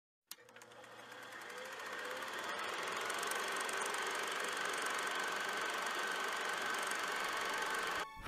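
A single click, then a steady machine-like hum with a faint high tone that fades in over the first few seconds and holds.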